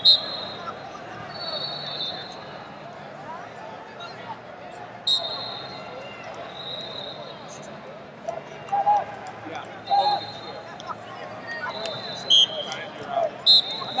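Busy wrestling-arena ambience: a constant hubbub of crowd voices, with short, shrill referees' whistles sounding again and again from nearby mats and a few sharp clicks and smacks.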